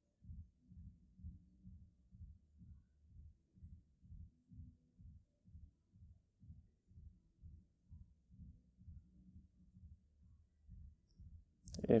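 Faint, soft, low thumps repeating in a steady rhythm, about two to three a second.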